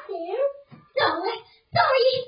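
A young child's high-pitched voice in short bursts with brief pauses between them.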